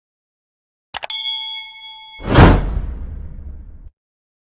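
Subscribe-button animation sound effects: a couple of quick mouse clicks about a second in, a bell ding that rings for about a second, then a loud whoosh that swells and fades out just before the end.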